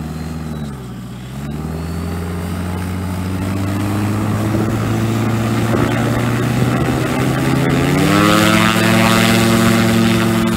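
Gyroplane engine and propeller running. Its pitch dips briefly about a second in, then holds steady. Near the end it is throttled up, rising in pitch and growing louder as the machine accelerates into its takeoff roll.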